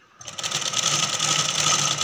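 Domestic sewing machine starting up about a fifth of a second in and then running fast and steady, a constant hum with rapid stitching, as it sews along the edge of a saree.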